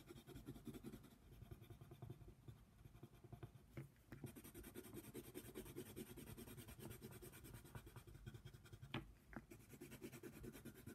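Yellow coloured pencil scratching faintly across coloring-book paper in quick back-and-forth strokes. Two light ticks, one about four seconds in and one near the end.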